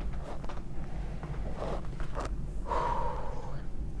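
A person's breathy gasps and a short drawn-out voiced sound about three seconds in, over a steady low hum.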